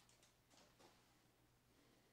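Near silence, with faint handling of a stack of trading cards: two soft rustles in the first second.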